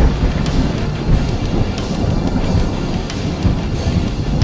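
Thunder sound effect: a loud, long rolling rumble with crackling, laid over background music.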